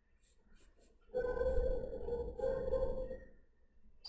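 Pencil strokes on sketch paper: two long strokes of about a second each, starting just over a second in, with a short break between them.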